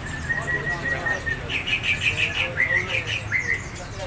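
Caged songbirds chirping: a steady high whistle for the first second or so, then a quick run of high chirps and short rising notes from about a second and a half in.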